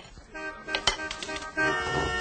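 A few light clicks of cutlery on dishes. Then, about one and a half seconds in, several car horns start honking at once in steady, overlapping tones, the sound of a traffic jam in the street.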